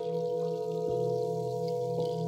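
Tibetan singing bowl sung with a wooden wand around its rim, giving a sustained ringing tone of several overlapping pitches with a slow wavering pulse in the low hum.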